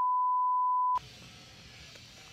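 Steady, single-pitched test-pattern beep of the kind laid over television colour bars, cutting off abruptly about a second in; faint hiss follows.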